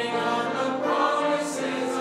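Church congregation singing a hymn together, many voices holding long notes in unison.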